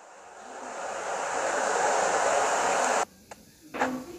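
A steady rushing hiss that swells over about two seconds, holds, then cuts off abruptly about three seconds in.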